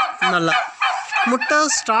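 A flock of domestic turkeys calling and gobbling, many short overlapping calls one after another.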